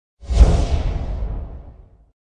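A whoosh sound effect for an animated logo transition: a sudden deep rush about a quarter second in that fades away over a second and a half, its hiss thinning as it dies.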